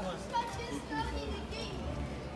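People's voices talking and calling, with a steady low hum underneath.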